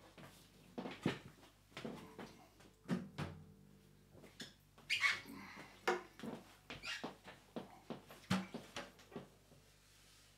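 Handling noise while swapping acoustic guitars: a scatter of light knocks, bumps and rustles as one guitar is put down and another is picked up, with movement around a small room.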